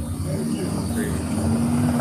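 Steady low engine drone of a motor vehicle, growing slightly louder, with faint voices underneath.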